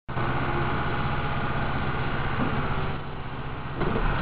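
A steady low engine rumble at idle, with an even fine pulse.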